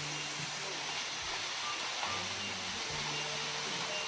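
A waterfall pouring down a rock face, heard as a steady, even rushing hiss. Under it run low steady tones that change pitch every second or so.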